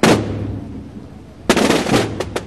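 Massed drums: a sudden loud crash of many drums at once that dies away over about a second, then another loud burst of drumming about a second and a half in.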